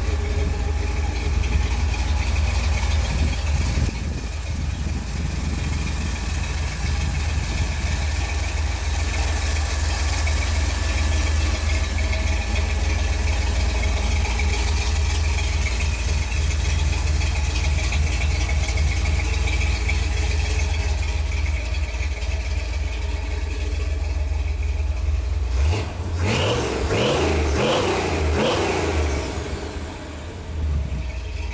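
Custom Jeep's 350 Chevy V8 running steadily through its Magnaflow dual exhaust, a continuous low rumble. About 26 seconds in it turns louder and uneven for a few seconds.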